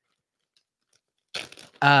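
Silence for over a second, then a short hiss and a man starting to speak near the end.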